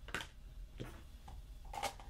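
Faint, brief rustles and taps of paper planner pages and a sticker book being handled on a cutting mat, a few short sounds with the loudest near the end.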